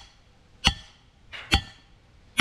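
Short-handled sledgehammer striking the half-inch steel back plate of a homemade slab-lifting tool, driving its blade into the clay under a concrete slab. Two sharp metallic clanks with a brief ring, a little under a second apart.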